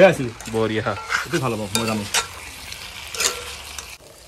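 Metal spoon stirring and scraping chicken pieces around a black wok on a gas burner, with a light sizzle of frying and a few sharp scrapes against the pan.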